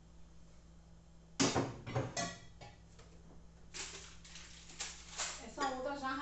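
Glasses and plastic cups knocking and clinking as they are set down on kitchen cabinet shelves. A sharp clatter of knocks comes about a second and a half in, then a run of lighter knocks, and a woman's voice joins near the end.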